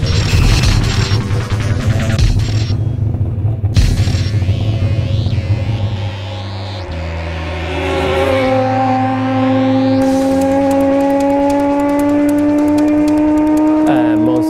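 Music with a heavy beat, then from about eight seconds a Volvo Polestar touring car's five-cylinder race engine accelerating under the music, its pitch rising slowly and steadily.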